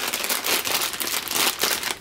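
Clear plastic bag crinkling as a hand grabs and handles the bagged accessory cord, a dense, continuous run of crackles.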